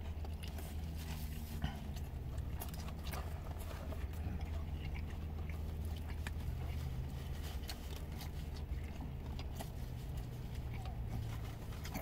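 A man chewing a mouthful of burger close to the microphone, with scattered small clicks, over a steady low hum.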